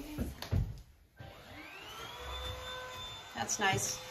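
A few soft footfalls, then a small electric motor spins up with a whine that rises in pitch for about a second and then runs steadily. A voice comes in over it near the end.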